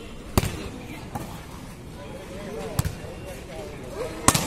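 A volleyball being struck during a rally, heard as sharp smacks: a strong one just under half a second in, a fainter one about a second in, and another strong one near three seconds.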